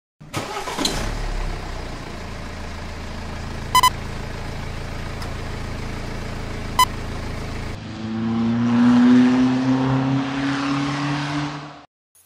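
Car engine running steadily, with a short double beep about four seconds in and a single beep near seven seconds, then the engine revving up with slowly rising pitch before cutting off just before the end.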